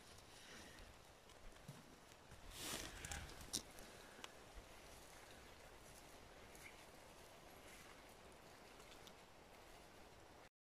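Near silence: faint outdoor background hiss, with a soft rustle about two and a half seconds in and a few faint clicks soon after.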